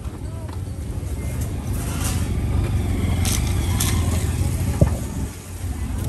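A vehicle engine passing close by, its low rumble growing louder through the middle and falling away near the end, with voices in the background and one sharp knock near the end.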